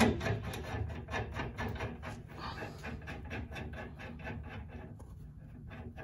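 Steel jam nut being spun by hand down the threaded shank of an inner tie rod: quick, irregular light clicks and the rub of metal threads, thinning out toward the end.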